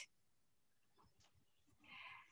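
Near silence in a pause between spoken sentences, with a faint short sound near the end.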